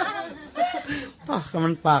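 Speech: a monk preaching in Thai in short phrases with brief pauses.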